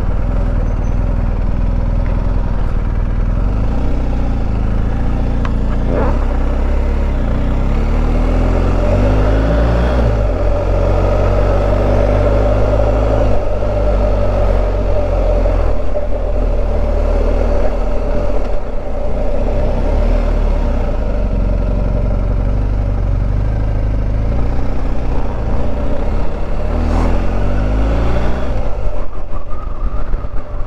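BMW R1250 GS boxer-twin engine running as the motorcycle pulls away from a standstill and rides at low town speed. The revs rise in pulls about six seconds in and again near the end.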